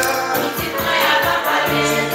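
Gospel song with a choir singing over a steady beat.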